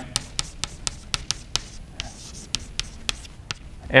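Chalk writing on a blackboard: an irregular string of short, sharp taps and clicks as the chalk strikes and drags across the slate to write a formula.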